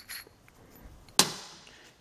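A single sharp metallic clank about a second in, fading in a short ring: an iron three-piece pipe union set down on the bench top.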